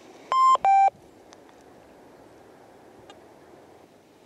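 Nokta Force metal detector's start-up beeps as it is switched on: two short electronic tones back to back, the first higher than the second.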